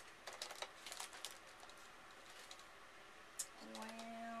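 Faint light clicks and taps of paper cards being handled on a cutting mat, mostly in the first second or so, with one more tick near the end.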